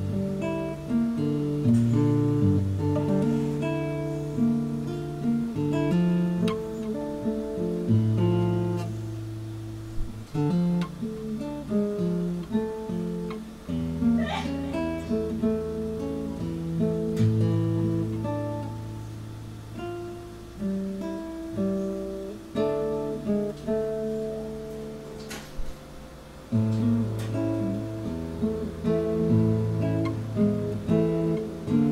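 Solo classical guitar played fingerstyle: a slow melody over held bass notes. Twice, about halfway through and again near the end, a finger squeaks on the strings.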